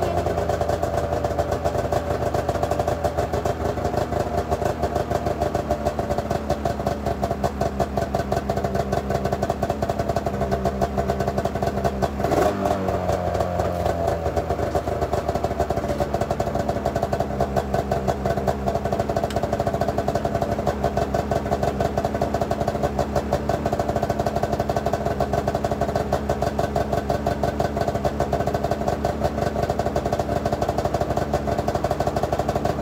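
2005 Arctic Cat M6 snowmobile's two-stroke twin, just pull-started, running steadily and loud with a fast, even exhaust pulse. A single sharp knock, with a brief dip in the engine note, about twelve seconds in.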